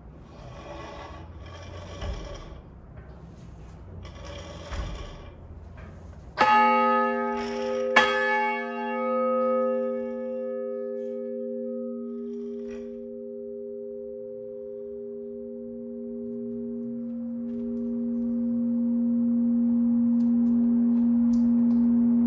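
1,218-pound 1860 Meneely bronze church bell swung by its rope and wheel: a few seconds of creaking and rumbling as the wheel turns, then the clapper strikes twice, about a second and a half apart. The bell rings on with a long, deep hum; its bright upper tones die away within a few seconds, while the low tones swell again near the end.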